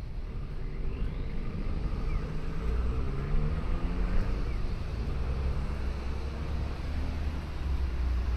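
Street traffic: a motor vehicle's engine running with a heavy low rumble, its note rising and then falling in pitch as it passes, loudest a few seconds in.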